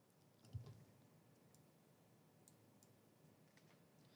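Near silence in a quiet room, broken by one soft thump about half a second in and a few faint, isolated clicks.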